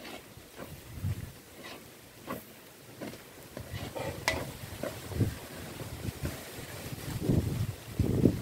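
Metal spatula scraping and knocking against a wok as garlic fried rice is stirred, in irregular strokes about a second apart. A low rumble of wind on the microphone comes in near the end.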